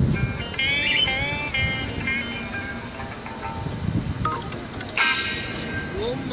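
Background music with a melody line that bends in pitch.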